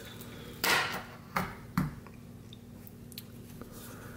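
Hands handling watches: a short rustle a little over half a second in, then two light clicks, as one wristwatch is put away and the next is picked up.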